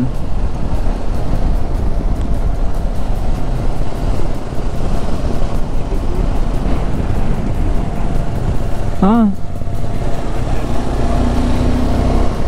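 Riding noise from a KTM Adventure motorcycle under way: wind rushing over the on-bike microphone with the engine running underneath, a steady low roar. A brief voice sound breaks in about nine seconds in.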